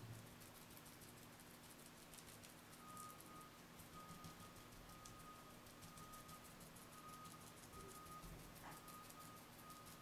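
Near silence: faint room tone with a steady low hum, and a faint high tone that comes and goes from about three seconds in.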